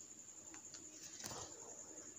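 Faint low clucking of a flock of laying hens, with a slightly louder call about a second in, over a thin steady high-pitched whine.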